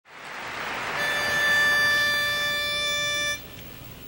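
Intro logo sound: a rising whoosh, then a single steady pitched note held for a little over two seconds that cuts off suddenly, leaving faint hiss.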